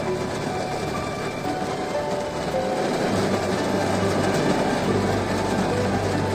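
Background music over a steady rushing noise of rain falling on a stopped car, which grows louder and deeper about halfway through.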